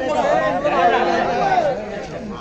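Many people talking at once: a crowd's chatter in a large space.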